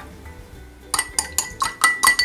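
A spoon stirring sauce in a drinking glass: after a quiet first second, a quick run of clinks against the glass, about ten in a second, with the glass ringing under them.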